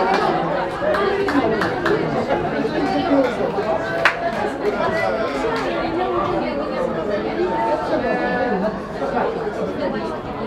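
Several voices talking and calling over one another as indistinct chatter, with a single sharp knock about four seconds in.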